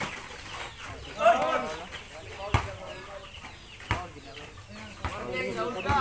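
Basketball bouncing on a packed-dirt court: a few separate thumps. They sound among clucking calls and voices, the loudest a short burst of calls about a second in.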